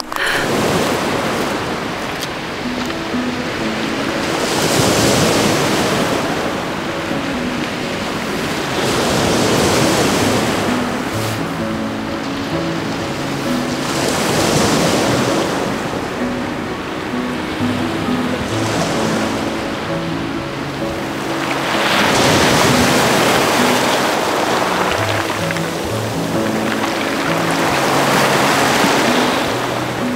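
Sea waves breaking and washing over a beach of stones and shells, swelling and drawing back about every four to five seconds. Soft background music plays underneath.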